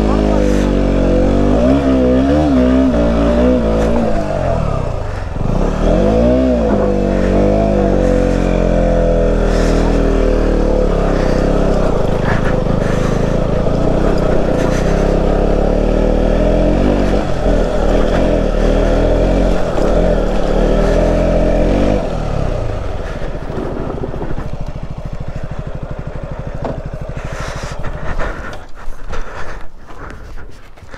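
KTM Duke 125 single-cylinder engine pulling the bike over a rough gravel track. The revs rise and fall over the first several seconds, then hold fairly steady. About 22 s in the engine sound drops away to a quieter background, with a few sharp knocks near the end.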